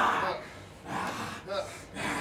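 A man's strained vocalising under a submission hold: a loud cry tails off at the start, then two short strained sounds follow about a second and a second and a half in.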